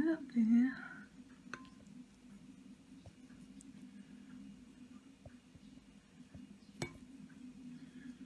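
A table knife scoring the rind of a whole camembert in a ceramic bowl. It gives a few faint clicks and one sharper clink near the end as the blade touches the bowl, over a low steady hum.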